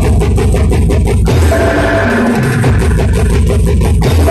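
Loud live band music through a large sound system: a heavy bass and drum beat under a keyboard melody.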